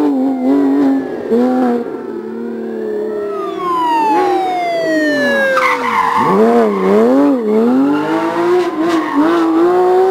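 Porsche 911 GT3 rally car's flat-six engine at full stage pace, revs rising and falling through gear changes. Midway its note falls in one long glide as it passes and pulls away, with a short burst of tyre noise, then quick rev swings as it brakes and accelerates.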